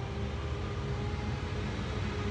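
Steady low background rumble with a faint hum in a pause between words.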